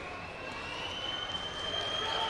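Steady background noise of a large indoor sports hall, with a thin high-pitched tone coming in at the start and rising slightly in pitch as it holds.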